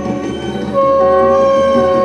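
Several conch shells (shankha) blown together in long, steady notes at different pitches. The main note breaks off at the start and comes back strongly just under a second in.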